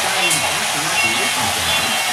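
Steam locomotive chugging sound effect from a model-railway sound app, played through a tiny Bluetooth speaker while an HO-scale model train runs on its track. The sound is a steady, hissy chuffing.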